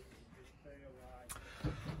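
Quiet room tone with a faint voice in the background and one sharp click about a second in.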